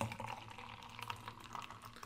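Nitro stout (Guinness 0.0) being poured from a widget can into a glass: a faint pour with scattered small ticks.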